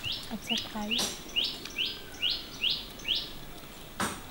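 A bird singing a quick series of short rising whistled notes, about nine of them, two to three a second.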